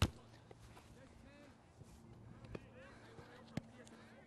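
Quiet open field with faint voices of players in the distance and a few short, sharp knocks of footballs being handled by gloved goalkeepers, the clearest about three and a half seconds in.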